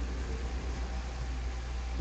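Steady low hum with an even hiss over it: background noise of the room and recording, with no other event.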